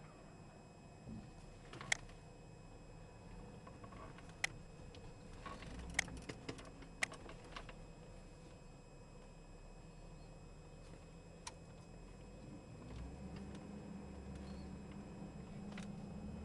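Chevrolet Silverado's 5.3-litre Vortec V8 running faintly, heard from inside the cab, with a few sharp clicks and taps scattered through. About thirteen seconds in, the engine note grows louder and deeper as the truck pulls away.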